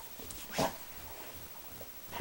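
A dog makes one short vocal sound about half a second in.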